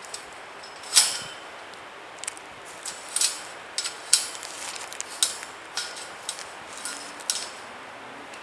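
Welded steel wire of a cattle panel clinking and knocking against metal T-stakes as it is pushed and shifted into place: an irregular string of sharp metallic knocks, the loudest about a second in.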